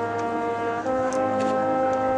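Marching band's brass section holding a sustained chord, then moving to a new held chord a little under a second in.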